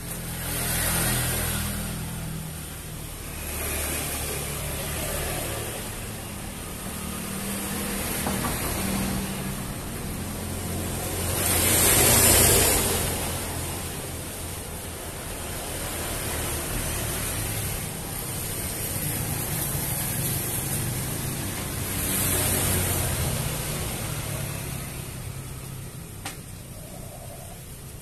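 Motor vehicles passing by: a low engine hum throughout, with several swells of engine and road noise that rise and fall, the loudest about halfway through.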